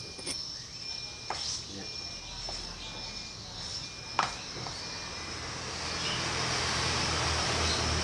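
Water poured from a glass mug into a tray of flour to make batter: a steady splashing hiss that builds from about halfway through. Before it come a few sharp knocks. A faint, evenly repeating high chirp runs behind.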